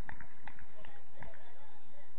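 Footballers on an artificial-turf pitch: distant shouted calls between players over light, scattered footfalls of running.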